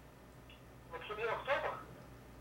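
A voice over a telephone line asks a short question about a second in, thin and narrow-sounding like a phone receiver, against faint room tone.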